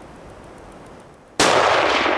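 A single hunting rifle shot about one and a half seconds in, its echo trailing off over about a second.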